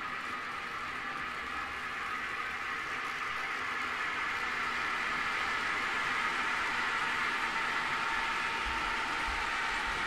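N scale model train, a pair of locomotives pulling Procor tank cars on metal wheels, running past on the track: a steady whirring of motor and wheels on rail that grows slightly louder as it approaches.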